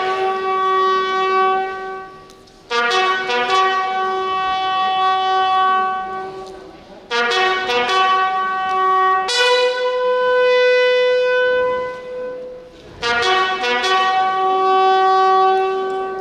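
A bugle sounding a slow funeral call of long held notes, each lasting a few seconds with short breaks between, one note higher than the rest about halfway through.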